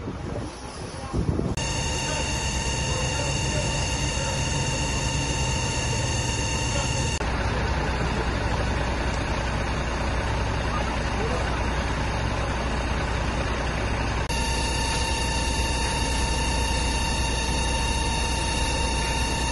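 Fire engine's engine and water pump running steadily under load, a constant low rumble with a steady whine over it, from about a second and a half in.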